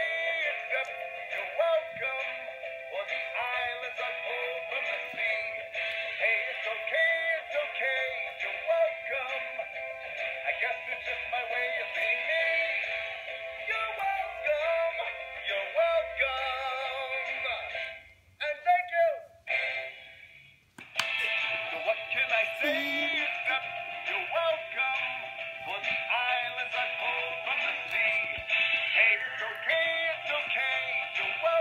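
A Disney Moana Maui singing toy doll plays a song in a man's singing voice over music through its small built-in speaker, thin and with no bass. The sound nearly drops out for about three seconds partway through, then the song resumes.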